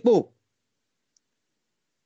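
A man's voice trails off at the end of a repeated phrase about a quarter second in, followed by silence with one faint click about a second in.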